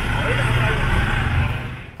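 Street ambience dominated by a low engine rumble from motorcycles and other traffic, with faint voices of people nearby. It eases off near the end.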